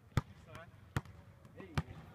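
Basketball bouncing on a hardwood gym floor, three sharp bounces a little under a second apart.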